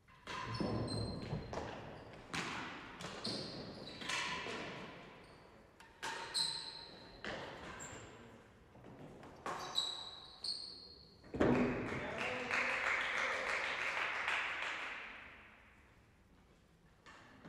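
Real tennis rally: the hard ball struck with wooden rackets and bouncing off the walls, floor and penthouse roof, each hit echoing through the court, about one every second or two. About two thirds of the way through, a louder hit is followed by a rushing noise that fades out over about three seconds.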